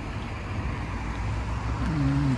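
Peugeot SUV manoeuvring slowly on a driveway: a steady low rumble.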